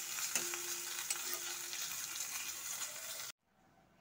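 Sheem paturi paste frying in a leaf-lined kadai, sizzling steadily, with a few clicks of a spatula stirring it. The sizzle cuts off suddenly near the end.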